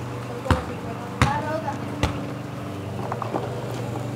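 An RC crawler truck knocking and bumping as it climbs over a car wheel and ramp: three sharp knocks in the first two seconds, over a steady low hum.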